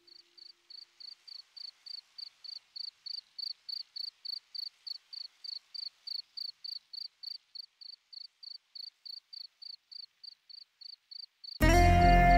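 A cricket chirping steadily, about four high-pitched chirps a second. Music comes in suddenly near the end.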